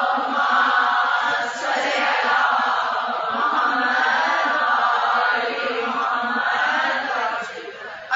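Many voices of a mourning congregation chanting together in a long, sustained recitation, fading out near the end.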